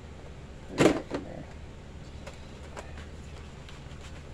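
A plastic paint bottle being handled: one short, loud clunk about a second in and a lighter knock just after it, then a few faint small clicks.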